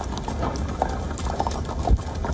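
Horses' hooves clopping unevenly on a wet road, over a steady low rumble of wind on the microphone, with one heavy thump just before the end.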